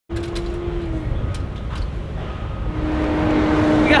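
Steady low rumble of a motor vehicle engine running, with a constant hum that sets in about three seconds in and a few faint clicks.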